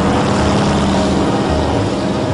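An old Chevrolet sedan driving past on a dirt road: its engine and tyres swell up and then ease off as it goes by, with background music continuing underneath.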